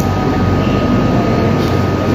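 Steady background machine hum and noise with a thin, steady high whine running through it.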